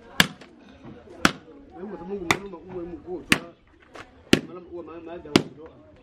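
Machete chopping butchered meat on the ground, six sharp strikes about once a second, with voices talking in the background.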